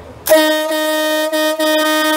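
Single-trumpet electric marine horn sounding one long steady blast, starting about a third of a second in, with two brief dips in level.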